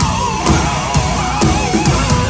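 Metal band playing live: drum kit and heavy guitars, with a high note wavering up and down over them.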